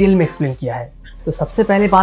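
A man's voice speaking, with a short pause about a second in.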